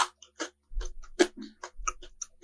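Maltesers, chocolate-coated malted honeycomb balls, crunched close to the microphone: a quick, irregular run of sharp little cracks and crackles.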